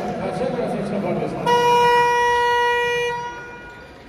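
Basketball arena horn sounding once: a single loud, steady blast about a second and a half long, starting about a second and a half in, over crowd chatter.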